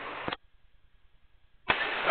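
Aviation-band radio receiver carrying air traffic control: a transmission's open-carrier hiss ends with a click about a third of a second in as the squelch closes, then near silence. Near the end the radio keys up again with a click and hiss just before the tower replies.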